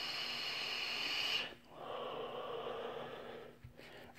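A long draw on an electronic-cigarette box mod, with airflow hissing through the atomizer, ends about a second and a half in. After a short pause comes a slow, softer breath as the vapour is exhaled.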